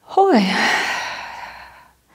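A woman's long sigh: a short voiced note sliding down in pitch, then a breathy exhale that fades out over about a second and a half.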